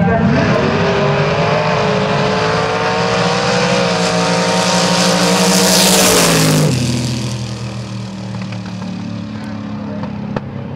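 Two gasser drag cars launching side by side at full throttle. The engine pitch rises steadily, with a brief dip about four seconds in. The sound is loudest as they pass about six seconds in, then the pitch drops sharply and fades as they run away down the strip.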